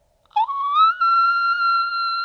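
A single high-pitched, whistle-like tone starts about a third of a second in, slides up in pitch for about half a second, then holds one steady note.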